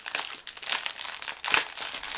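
Plastic wrapping crinkling as a bundle of small bags of diamond-painting drills is handled, in irregular rustles with one louder crackle about one and a half seconds in.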